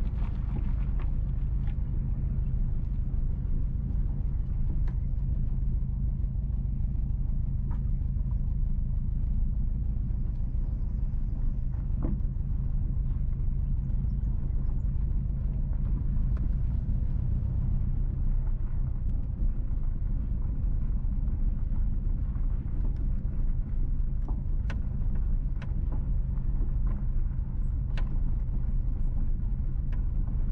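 Car driving slowly over an unpaved dirt road: a steady low engine and tyre rumble, with a few faint clicks now and then.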